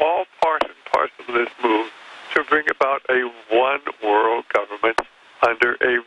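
Speech only: a person talking without pause, heard over a narrow, phone-like sound band.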